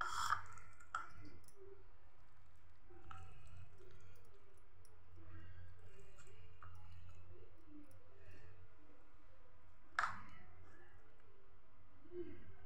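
A few sharp clicks of a spoon against a ceramic serving dish as halwa is scooped out, the loudest about ten seconds in, over a steady low hum.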